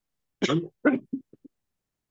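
A person clearing their throat and coughing: two short rasps, then a few quieter catches that fade out about halfway through.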